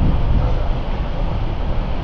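Steady low rumble of a passenger train carriage running along the track, heard from inside the carriage.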